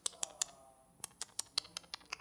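About ten sharp, dry clicks, irregularly spaced in two groups, with a faint ringing tone beneath: percussive clicks from the song's sparse intro.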